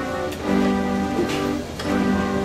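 A school string orchestra of young violinists and other string players playing together in held notes. The chord changes about half a second in and again near the end.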